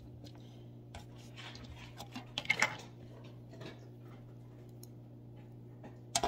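Faint rustling and light clicks of fingers pressing loose pipe tobacco into a corn cob pipe bowl over a foil pie pan, busiest about two and a half seconds in, over a steady low hum.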